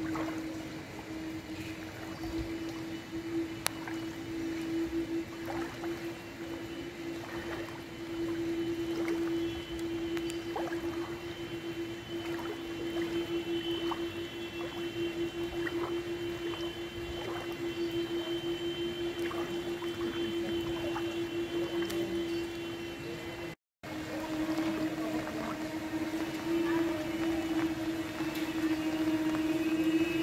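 Floodwater sloshing around the legs of a person wading through waist-deep water, under a steady mid-pitched hum from an unseen machine.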